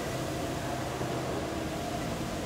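Steady low hum and hiss of a large hangar's background noise, with no sudden sounds.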